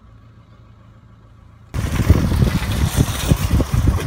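Faint steady hum of a parked car's cabin. About two seconds in it cuts abruptly to loud, gusty wind buffeting the microphone, with irregular low rumbles.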